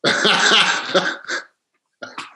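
Laughter, breathy and loud, lasting about a second and a half and ending in a short last burst.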